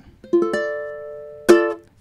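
Ukulele strumming a Dm7 chord barred across the fifth fret (all four strings at 5). The first strum rings and fades; a second, sharper strum about a second and a half in is cut short, played staccato by releasing the fretting pressure.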